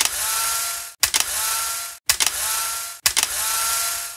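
Camera shutter sound, four times about a second apart: each a quick cluster of clicks followed by a short fading hiss.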